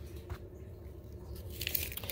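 Faint handling of a cardboard product box, a few light knocks and rustles over a low room hum.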